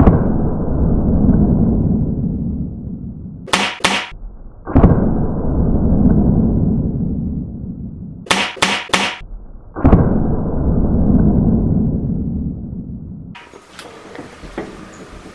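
.22 air rifle fired three times, about five seconds apart, each shot a sudden report followed by a low rumble that slowly fades. Before the second and third shots comes a quick run of three or four short sharp sounds.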